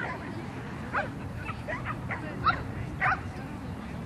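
A dog barking in a series of short, sharp yips, loudest about one, two and a half and three seconds in.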